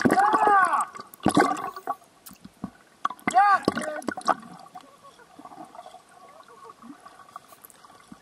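A freediver's voice squealing underwater, heard through the water: three rising-and-falling squeals in the first four seconds, then bubbling and water sloshing.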